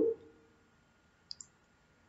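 A narrator's voice trails off on its last syllable, then near silence, broken a little past the middle by two faint, short clicks in quick succession.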